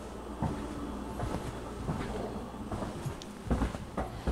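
Quiet handling noise and soft knocks from a phone camera carried through a small room, over a low steady hum, with a louder thump about three and a half seconds in.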